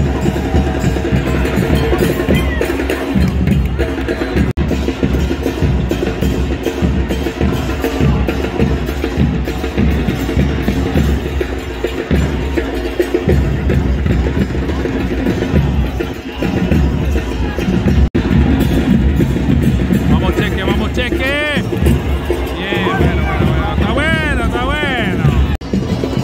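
Stadium supporters' bass drums and percussion beating a steady rhythm, over a mass of crowd voices.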